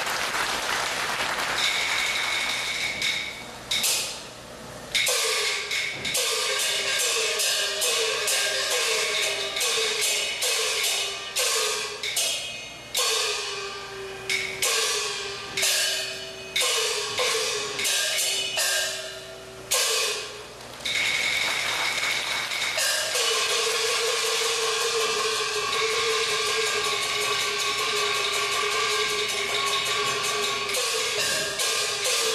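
Taiwanese opera percussion ensemble playing fight-scene accompaniment: gong strokes that drop in pitch, roughly one a second, over clashing cymbals and a wooden clapper. Near the last third it turns into a continuous ringing gong-and-cymbal roll.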